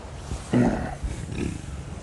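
A silverback gorilla gives a short, deep, throaty grunt about half a second in, a greeting, followed by a fainter grunt.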